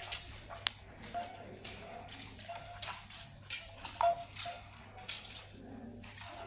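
Go stones clicking: a scatter of light, sharp clicks of stones set on wooden boards and handled in their bowls, over a faint low hum.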